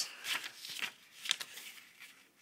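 A square sheet of printer paper rustling and crackling in several short crinkles as hands handle and crease it.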